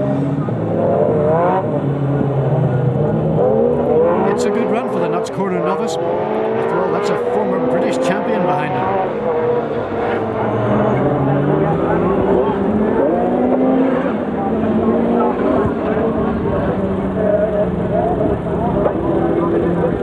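Several rallycross cars' engines revving hard, their notes rising and dropping with gear changes and overlapping one another. A run of sharp clicks and cracks comes a few seconds in.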